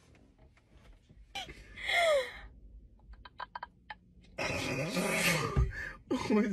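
People laughing: a short high squeal of laughter with falling pitch about a second and a half in, a few faint clicks, then a loud breathy burst of laughter near the end.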